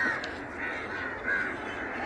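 A few faint, short bird calls over a low, steady outdoor background.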